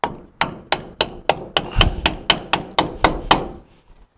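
A mallet striking a wooden block about a dozen times in quick, even succession, roughly four blows a second, driving a new wheel seal into the end of a rear axle tube. The blows stop shortly before the end, with the seal seated.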